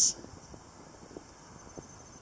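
Quiet outdoor background: a low, even hiss with a faint steady high-pitched tone and a few tiny clicks.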